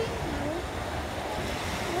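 Steady rushing of beach surf with wind buffeting the phone microphone. A brief murmured voice sounds near the start.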